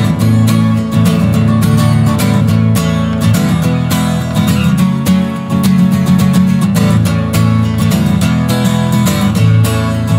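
Solo acoustic guitar strummed in a steady rhythm, with no voice: the instrumental intro of a song.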